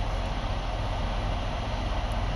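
Steady low rumbling drone with an even hiss, from an idling vehicle heard inside its cab.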